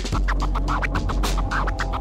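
Hip-hop instrumental with rapid turntable scratching over a deep, steady bass. A held chord comes in near the end.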